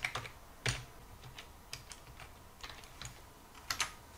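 Computer keyboard keys tapped one at a time, faint and irregularly spaced, about eight clicks in all with a close pair near the end.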